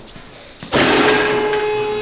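Two-post car lift's electro-hydraulic pump motor switching on suddenly less than a second in and running with a steady hum and whine as it raises a car.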